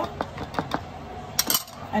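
A few light clinks and taps of a small glass seasoning jar and a wire whisk against a mixing bowl, the sharpest pair of clicks about a second and a half in.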